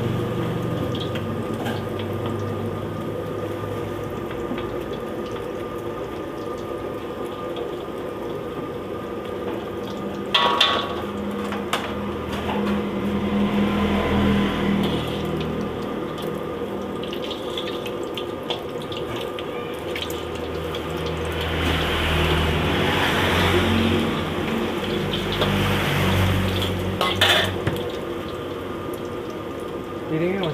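Fu yung hai egg omelette deep-frying in hot oil in a steel wok, with a steady sizzle and bubble. A metal utensil clanks sharply against the wok twice, about ten seconds in and near the end.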